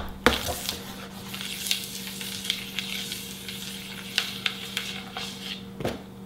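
Flying disc spinning on a fingertip in a rim delay: a sharp slap as the disc is set spinning, then a steady crackling hiss of fingernail rubbing on the spinning plastic, ending in another slap as the disc is caught near the end.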